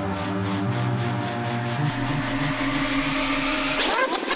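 Psytrance track: sustained synth tones over a stepping bass line, with a rising sweep building over the last two seconds and breaking off at the end.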